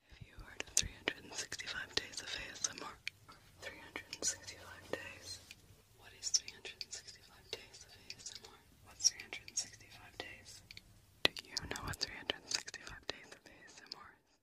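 A person whispering in phrases, close to the microphone, with many small sharp clicks among the words.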